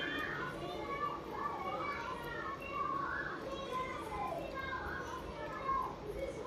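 Children's voices talking and calling out, with no clear words.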